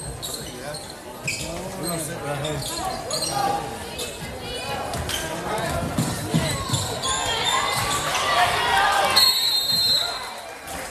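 Basketball being dribbled on a hardwood gym court, with players' sneakers squeaking, a sharp squeak near the end, and shouting voices from players and crowd.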